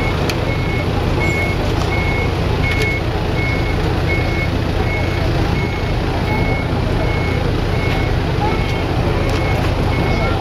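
A vehicle's reversing alarm beeps steadily, about two high single-tone beeps a second, over the low continuous running of an engine close by.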